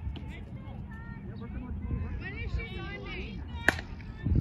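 A softball bat hitting a soft-tossed softball once near the end: a single sharp crack with a brief ring.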